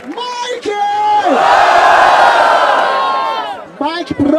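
A few drawn-out shouts, then a large crowd cheering and yelling loudly for about two seconds before fading. This is the audience voting by noise for a rapper at the close of a freestyle battle.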